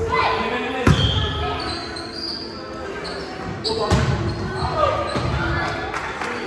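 Volleyball rally in a gymnasium: two sharp ball hits, about a second in and again near four seconds, among players' shouts, echoing in the large hall.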